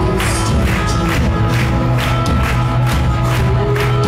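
Live rock band playing through a venue PA: drum and cymbal hits about twice a second over held guitar and keyboard chords, with no vocal line standing out.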